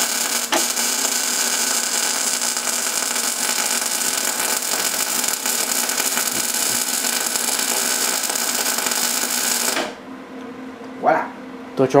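MIG welder running one continuous bead, the arc sizzling steadily as the ring gear is welded to its shaft, then cutting off abruptly about ten seconds in.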